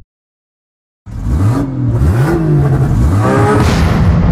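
A car engine revving hard, its pitch climbing and dropping several times, starting suddenly about a second in after silence.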